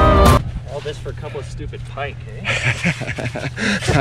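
Background music cuts off shortly in. Then there are low voices and laughter over the steady low hum of an idling Toyota Tacoma pickup truck, with a snow shovel scraping and digging in deep snow in the second half.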